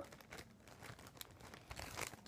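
Faint, intermittent crinkling and rustling of packaging being handled.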